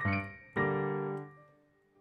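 Piano chords: one struck chord dies away, then a chord about half a second in is held, rings and fades out, leaving a short pause.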